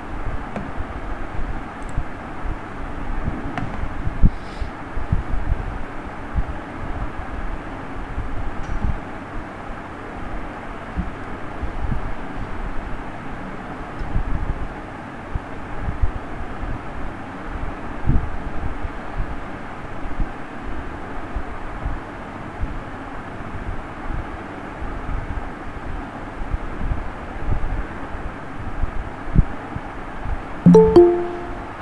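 Steady background rumble and hiss with scattered low thumps throughout.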